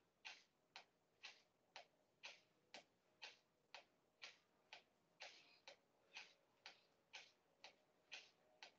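Faint, even clicks or taps, about two a second, keeping a steady rhythm throughout.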